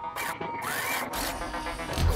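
Soundtrack music and electronic sound effects: a burst of hissing noise with a rising sweep in pitch, then a low rumble building from about halfway through.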